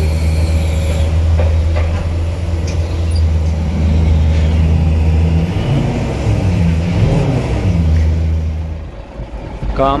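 A large vehicle engine running with a steady low rumble; it fades away shortly before the end, when a man starts to speak.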